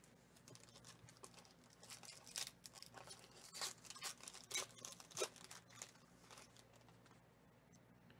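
Foil card-pack wrapper crinkling and tearing as it is ripped open by hand, a quick run of sharp crackles from about two seconds in, dying away after about five seconds.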